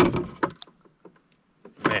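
A single sudden knock on a plastic kayak hull, loud at first and dying away within about half a second.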